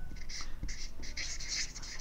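Felt-tip marker writing on flip-chart paper: a quick run of short scratchy strokes, several a second.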